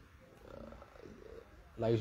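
A faint, drawn-out, wavering voice sound in a lull of talk, then a man starts speaking again near the end.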